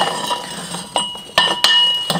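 Steel tools clinking as a breaker bar, socket and cheater pipe are handled on a transfer-case yoke tool. There are several sharp metallic clinks, one at the start, one about a second in and a quick few near the end, each leaving a brief ringing tone.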